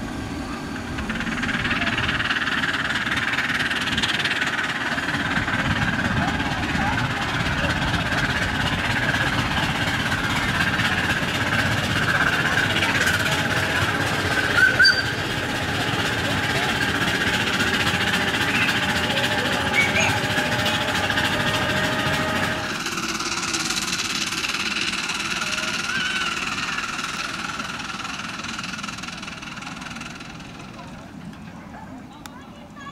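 A miniature ride-on park railway train running on its track, with a steady mechanical rumble that drops off sharply about three-quarters of the way through, over the chatter of a crowd.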